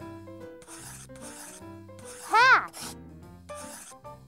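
A marker scribbling sound effect in about four short strokes as a word is written out, over light children's background music. Just past halfway a voice sounds out one syllable that rises and then falls in pitch, the loudest moment.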